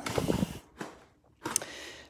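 Hands fitting an LED light back into a padded camera-bag compartment: soft rustling and a couple of light knocks, with a short pause in the middle.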